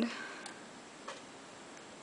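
Two faint clicks of a computer mouse, about half a second apart, over quiet room tone.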